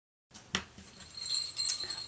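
Small metal jingle bells glued onto a canvas Christmas stocking jingling faintly as the stocking is picked up and handled, after a sharp tap about half a second in.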